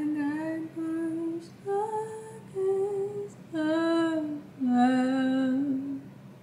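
A woman's voice singing slow, held notes unaccompanied, about six notes of half a second to a second each, with short gaps between them.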